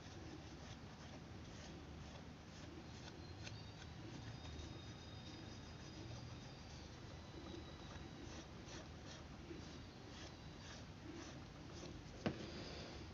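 Fingers rubbing paper residue off a copper-clad PCB: faint, irregular, scratchy rubbing strokes. This clears the photocopy paper from the board after the toner transfer, leaving the printed circuit traces stuck to the copper.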